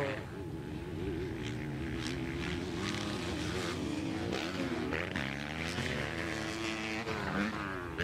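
Several motocross motorcycle engines running at once, idling and blipping, their pitches wavering up and down and overlapping, with a few faint sharp clicks.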